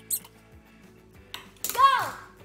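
Short plastic clicks of a craft-stick catapult's plastic spoon arm being pressed down and released, one sharp click near the start and another about a second and a half in, over quiet background music.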